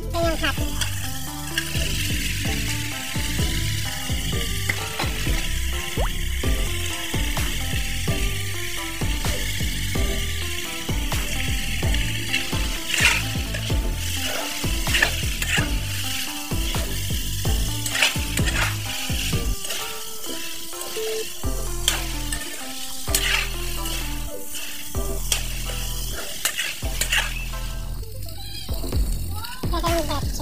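Ground meat and sliced hotdogs sizzling in a wok with a steady hiss, while a spatula stirs and scrapes against the pan in frequent sharp strokes.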